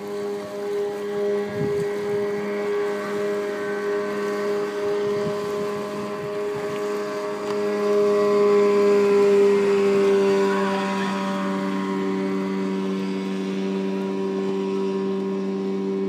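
Motorboat engine running at speed with a steady drone, growing louder about halfway through as the boat passes closest, then settling.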